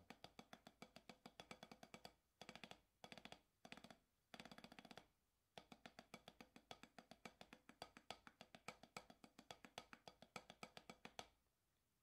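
Wooden drumsticks playing fast warm-up strokes on an 8-inch mesh practice pad: a quiet, dry tapping, roughly seven strokes a second, in several short runs with brief pauses between them.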